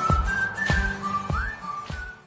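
Outro music: a whistled melody of short held notes, one sliding upward a little past halfway, over a steady beat of low thumps about 0.6 seconds apart.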